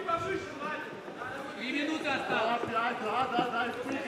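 Men's voices calling out around the cage during an MMA bout, fainter than the commentary and with no clear words.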